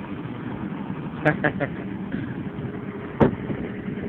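Steady road and engine noise of a moving car heard from inside, with a brief voice sound about a second in and a single sharp click about three seconds in.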